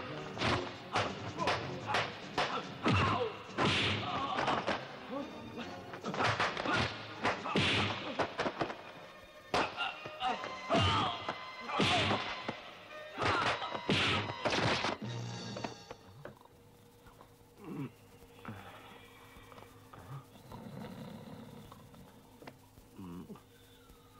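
Kung fu film fight sound effects: dubbed punch and strike impacts in quick succession, with grunts and cries, over low music. The blows stop about 15 seconds in, leaving only quiet music.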